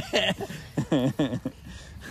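Men laughing in a few short bursts, trailing off into a lull near the end.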